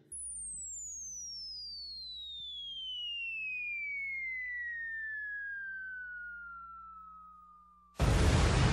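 A sound-effect sample: one long whistling tone that falls steadily from very high to middle pitch, fading toward the end, over a faint low hum.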